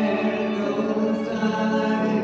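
Live music with singing: long held notes over sustained accompaniment, moving to a new chord about halfway through.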